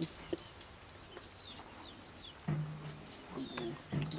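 A few faint, short bird chirps, each a quick up-and-down call, scattered over a quiet outdoor background, with a brief low murmur of a voice about two and a half seconds in.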